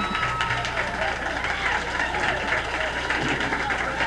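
Studio audience applauding and cheering: a steady clatter of many hands clapping mixed with voices.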